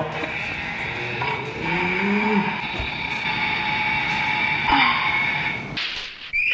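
Shin Kamen Rider DX toy transformation belt playing an electronic sound effect from its small built-in speaker after a long press of its button: a sustained whirring with steady high tones, changing near the end.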